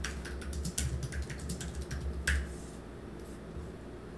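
Typing on a computer keyboard: a quick run of keystrokes for about two and a half seconds, then it stops.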